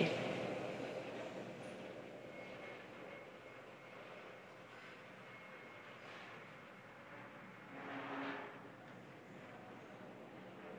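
Faint steady background hiss with a faint thin tone running through it, while the last words die away in the first second. A brief, slightly louder muffled sound comes about eight seconds in.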